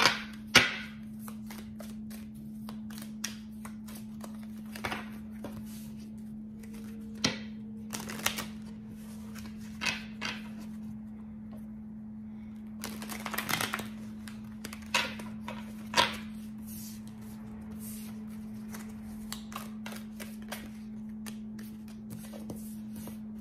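A deck of Tea Leaf Fortune Cards being shuffled and handled by hand: irregular clicks and snaps of the cards, a few of them louder, over a steady low hum.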